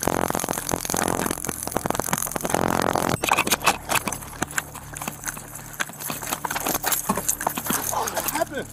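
Rapid running footsteps on pavement and the rattle of a police officer's gear picked up by a body-worn camera during a foot chase, with a sharp crack about three seconds in.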